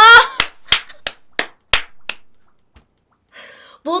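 A woman's short, loud cry of laughter, then six sharp hand claps at an even pace of about three a second, stopping about two seconds in.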